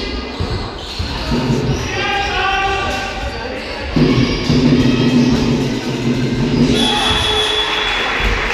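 Basketball bouncing on a wooden sports-hall floor during play, with players' voices calling out in the reverberant hall.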